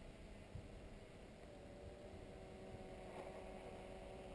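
UP Air One quadcopter's propellers humming faintly in the distance as it flies high up, with a few steady tones coming in about a second and a half in over a low hiss.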